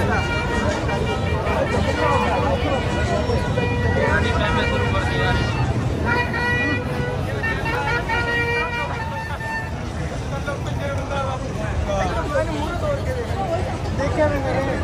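Busy city street at night: a constant traffic rumble with passers-by talking. Several held steady tones sound between about four and nine seconds in.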